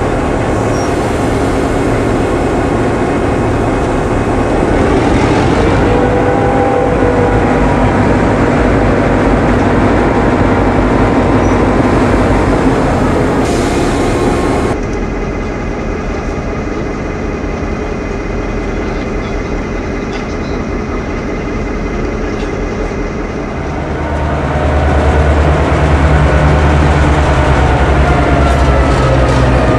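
Two-stroke EMD diesel engines of CIÉ 141 class locomotives B141 and B142, running steadily at low power. Near the end a louder, deeper engine drone sets in as the pair runs along a station platform.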